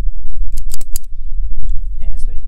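A handheld rotary cable stripper being handled, giving a few quick, sharp clicks a little under a second in, over a steady low rumble.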